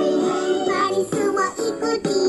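Music: a children's song about healthy eating, with sung vocals over an instrumental backing.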